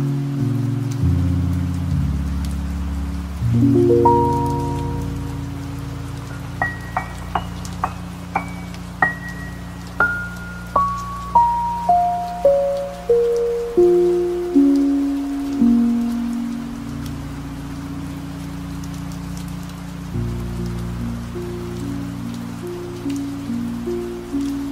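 Slow, sustained piano chords over a steady bed of rain sound. From about six seconds in, a run of single high notes climbs and then steps back down one note at a time, before low chords return near the end.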